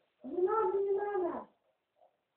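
A cat giving one long meow of about a second, its pitch rising and then falling.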